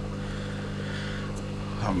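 Steady low electric hum of an aquarium air pump driving sponge filters, several pitches stacked one above another.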